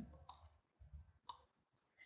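A short sharp click, then two much fainter ticks, in an otherwise near-silent pause.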